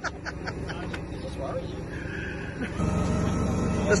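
A four-wheel-drive's engine idling steadily, louder from about three seconds in.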